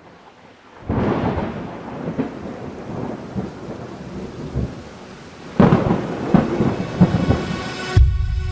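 Thunderstorm: steady rain with rolling thunder, two loud rumbling peals, one about a second in and one near the end.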